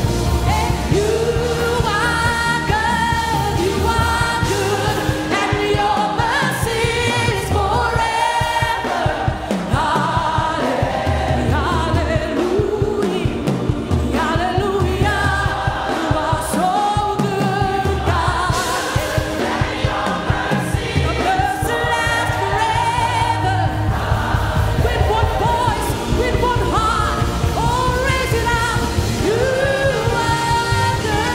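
An African gospel worship song: voices singing over a steady instrumental backing.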